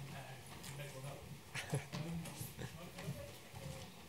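Faint, off-microphone speech in a lecture hall, with a few sharp clicks or knocks, the clearest a pair a little before two seconds in.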